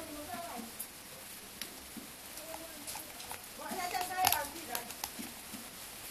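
A voice sounds briefly at the start and again, louder, about four seconds in, over scattered small clicks and taps of a screwdriver on a metal valve body and its screws.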